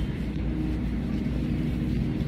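Steady low background rumble of a store's interior, an even hum with no clear events.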